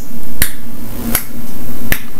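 Sharp percussive clicks on a steady beat, about one every three-quarters of a second, over a steady hiss and low hum, at the start of a music track.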